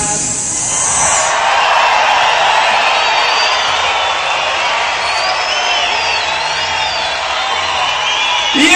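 Large open-air festival crowd cheering and applauding just after a song ends, swelling over the first second into a steady roar. A few high gliding whoops rise above it in the middle seconds.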